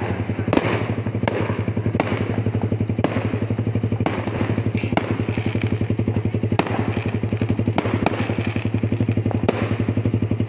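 Suzuki Raider 150 carbureted single-cylinder four-stroke engine running steadily with an even pulsing exhaust note. Sharp pops come out of the exhaust at irregular intervals, roughly once a second: the exhaust backfiring as it shoots flames.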